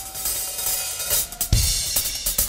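Live band music: a drum kit's cymbals wash under a held note, then the full band hits a loud downbeat with kick drum and bass guitar about one and a half seconds in.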